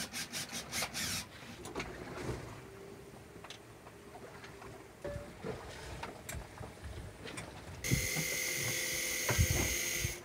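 Clicks and knocks of hands working at the connections of a sailboat's electric autopilot drive motor in a cockpit locker. About eight seconds in, a steady hissing whir with a faint whine starts suddenly and runs on.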